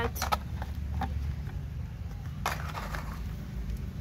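A red plastic plate scraping and knocking against a steel bowl a few times as boiled meat is scooped out, over a low steady rumble.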